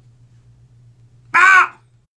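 A man's short, loud shout of about half a second, rising and falling in pitch, over a steady low hum.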